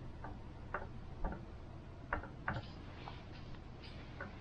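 Quiet sharp ticks about twice a second, evenly spaced at first and less regular later. A soft rustle of a hand moving over paper comes in over the second half.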